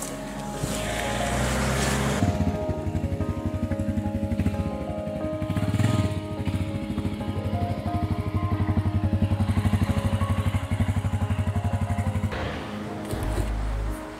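Honda Dominator 650's single-cylinder four-stroke engine running at low revs with a fast, even pulse as the bike is ridden slowly, then cutting off about twelve seconds in. Background music plays throughout.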